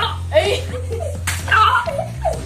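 Water balloon being smacked against a boy's head: two sharp wet slaps, the louder about a third of a second in and another about halfway through, with children shouting and laughing over background music.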